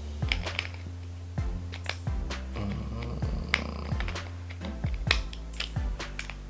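Background music with a steady low bed, over a scatter of short sharp clicks from a baitcasting reel's side cover being fitted and locked back into place by hand.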